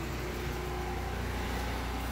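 LG portable air conditioner running: a steady, even hum of its compressor and fan.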